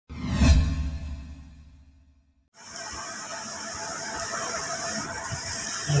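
An intro sound effect: a ringing hit with a low boom that swells for half a second and fades away over about two seconds. After a short gap comes a steady hiss with a faint even hum, the running noise of a laser marking machine.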